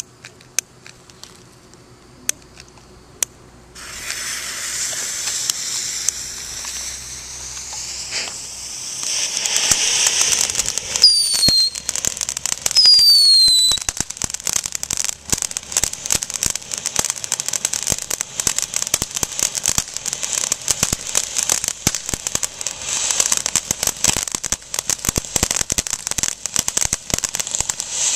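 Small consumer firework fountain burning: after a few sharp clicks, a steady hiss of spraying sparks starts about four seconds in, with two short falling whistles near the middle, then turns to dense crackling.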